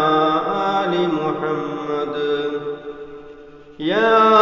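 A man's voice chanting Arabic prayer in long, drawn-out melodic notes that glide between pitches. This is the blessing on the Prophet that opens the Friday sermon. The voice fades near the end, then a new phrase begins with a rising swoop.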